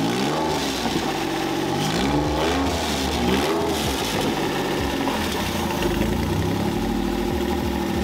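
Porsche 996's flat-six engine running just after starting, revved up and down several times before settling to a steady idle. The mechanic thinks the throttle cable is routed wrong, because the throttle body does not return all the way.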